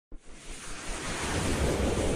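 A rushing whoosh sound effect that opens with a brief click and swells steadily louder, with a low rumble underneath.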